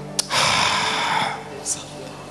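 A loud breathy rush of air into a handheld microphone, a forceful exhale lasting about a second, with a short faint hiss near the end. A low sustained note holds steady underneath.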